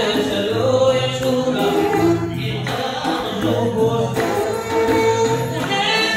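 Live Amazigh rrways music: a lead singer at a microphone, backed by an ensemble of plucked lotar lutes playing a steady rhythm, with group vocals.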